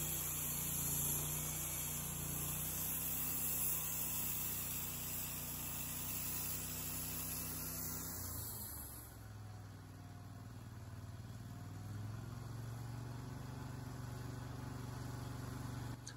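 Wood-Mizer LT30 Hydraulic band sawmill running steadily. About nine seconds in, its note shifts and the high hiss fades, the sound dropping a little before settling again.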